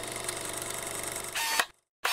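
Film-reel projector sound effect: a steady, rapid ticking rattle. About 1.4 s in, a short, louder camera-shutter click and whir stops abruptly.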